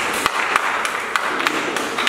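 An audience clapping: many quick, irregular claps over a steady patter.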